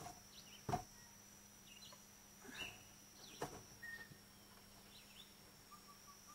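Faint, scattered bird chirps outdoors, with one sharp knock about a second in and a smaller one a little past the middle.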